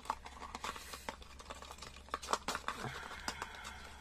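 Faint scattered clicks and light taps of small objects being handled and set down on a tabletop, over a low steady hum.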